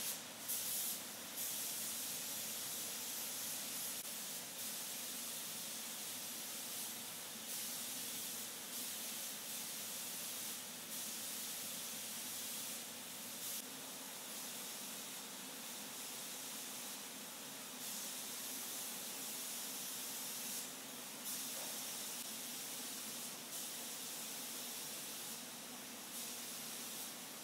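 Paint spray guns hissing in bursts of one to a few seconds each, starting and stopping repeatedly, over a fainter steady lower hum.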